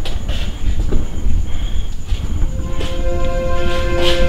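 Film soundtrack drone: a deep steady rumble under a chord of held tones that drops away early and comes back about three quarters of the way in, with a few brief airy swishes.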